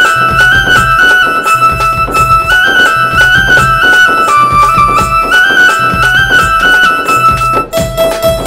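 Instrumental passage of Telangana folk music: a keyboard plays a short melody that steps up and down, repeated about every two seconds, over a steady beat from a dholak and a jingled frame drum. The music dips briefly near the end before a new phrase begins.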